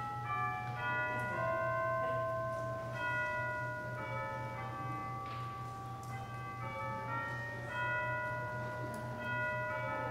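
Bell music: notes at many pitches struck one after another and left to ring, overlapping, over a steady low hum.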